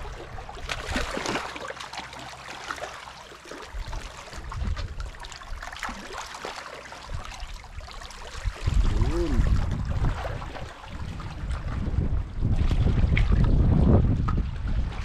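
Shallow seawater trickling and splashing over a rocky reef flat as someone wades through it, with scattered small clicks. From about two-thirds of the way in, wind buffeting the microphone adds a loud low rumble.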